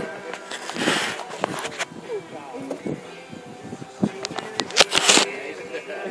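Indistinct talking and laughter from a group of people, with several sudden sharp sounds; the loudest comes about five seconds in.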